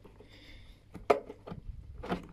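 One sharp plastic click about a second in, followed by a few faint taps, as the scooter's plastic glovebox panel is handled and swung open on its plastic hinge.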